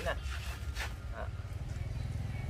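A low, steady engine rumble, with a few brief clicks over it.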